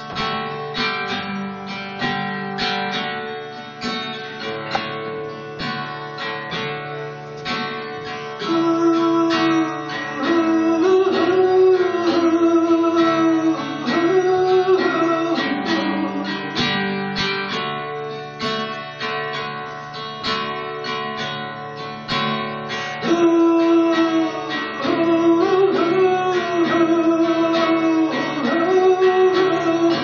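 Solo acoustic guitar strummed steadily through an instrumental passage of a folk-rock song, played live.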